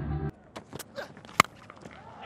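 A music sting cuts off just after the start. Stump-microphone sound of a cricket delivery follows: a few light footfalls from the fast bowler's delivery stride, then one sharp crack of the bat hitting the ball about a second and a half in.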